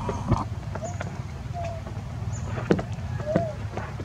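A steady low motor hum, with scattered light clicks and a few short high chirps over it.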